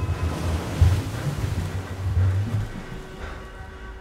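Rushing ocean-surf sound effect with a deep rumble, over a soft sustained music bed; it swells about a second in and then fades down.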